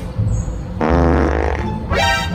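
A comedic fart sound effect: one low, buzzing blurt lasting under a second, about halfway through, over background music.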